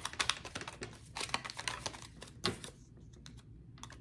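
A deck of tarot cards being shuffled by hand: a rapid run of light card clicks and flicks that stops about two and a half seconds in.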